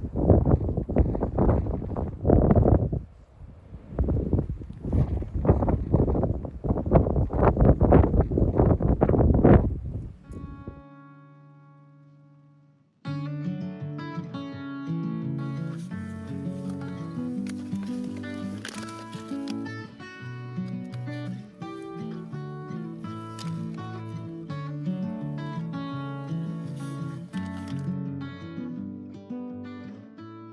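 Strong wind gusting against a tent and the microphone in loud, uneven surges for about ten seconds. A held note then fades out, and acoustic guitar music begins about thirteen seconds in and carries on.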